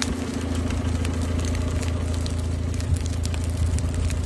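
A vehicle engine running steadily at a low hum, with scattered sharp crackles over it.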